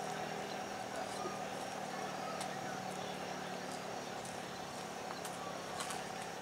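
Federal Signal Model 5 rooftop civil-defence siren sounding a steady held tone, with a few faint clicks over it.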